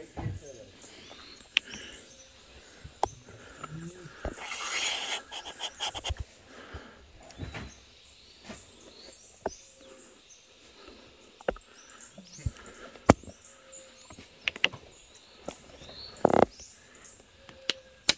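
Wild birds chirping and calling in tropical woodland, many short high notes, with scattered sharp clicks and knocks and a brief burst of noise about four seconds in.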